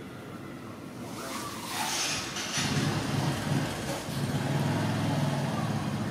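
A motor engine running, its steady low hum coming in about two and a half seconds in after a rising hiss.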